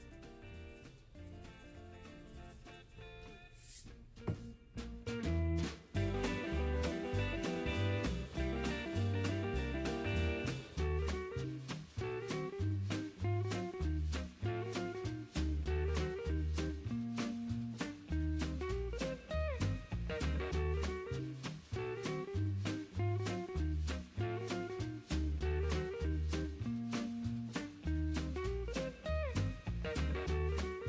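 Background music, swing-style jazz with guitar and a steady beat. It starts quietly and gets louder about five seconds in.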